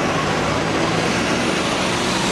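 Road traffic: a motor vehicle running close by, a steady rush of engine and tyre noise with a low engine hum.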